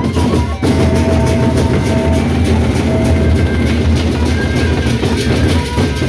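Gendang beleq ensemble playing: large Sasak barrel drums beaten rapidly with sticks in a dense, driving rhythm, with held ringing tones above. There is a brief drop just after it starts.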